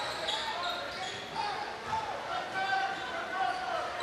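A basketball being dribbled on a hardwood gym floor, a few scattered bounces, over the steady chatter of the crowd in the gym.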